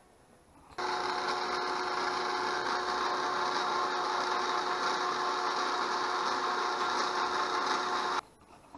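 A machine running with a steady whir and several constant tones. It starts abruptly under a second in and keeps an even level throughout.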